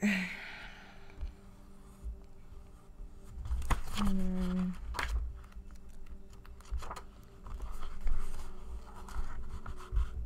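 Pages of a paperback tarot guidebook being handled and turned, with a few sharp paper ticks over a low room rumble. A short hummed vocal sound comes about four seconds in.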